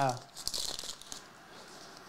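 Torn-open plastic trading-card pack wrapper crinkling as the stack of cards is slid out: a few light crackles in the first second, then faint.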